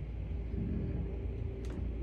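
Low steady rumble with a faint steady hum, and a single faint click near the end; no distinct sound event.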